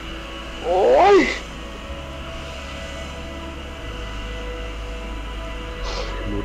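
A person's drawn-out, whiny "oy" cry of dismay, its pitch rising then falling, loud and about half a second long about a second in, over steady soft background music.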